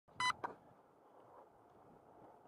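A single short electronic beep, then a click, then faint steady noise.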